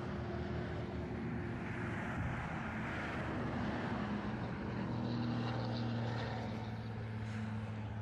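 A motor vehicle's engine running steadily, its hum rising slightly in pitch about halfway through.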